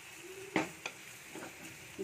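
Wooden spatula stirring a wet prawn and ridge gourd curry in a clay pot, knocking against the pot a few times, the loudest about half a second in, over a faint sizzle of the simmering curry.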